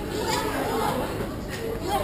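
Indistinct chatter of several people talking at once in a large indoor public space.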